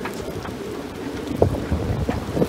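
Gusty storm wind buffeting the phone's microphone, a steady noisy rumble, with a short tap about one and a half seconds in.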